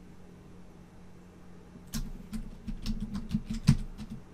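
Computer keyboard keys being typed as a password is entered, a run of quick separate clicks starting about two seconds in, after a quiet start.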